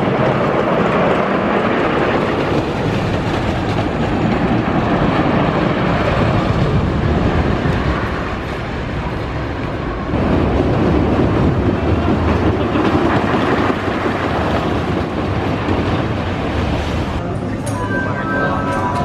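Wooden roller coaster train running along its wooden track, a loud, continuous rumble and clatter. The sound shifts about ten seconds in.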